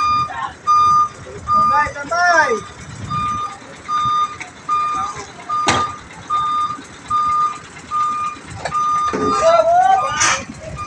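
A truck's reversing alarm sounds a steady single-tone beep a little under twice a second as the 12-wheeler backs up. Men shout briefly near the start and near the end, and there is one sharp knock about six seconds in.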